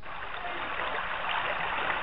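Steady rushing noise, like hiss or static, in a low-fidelity, narrow-band radio-show recording, growing slightly louder.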